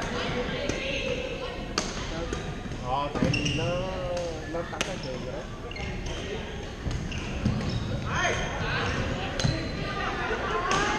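Badminton rackets striking the shuttlecock in sharp, echoing smacks every few seconds, with sneakers squeaking in short sweeps on the hall's sports floor as players move.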